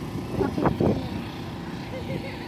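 A girl's short burst of voice about half a second in, over a steady low outdoor background rumble.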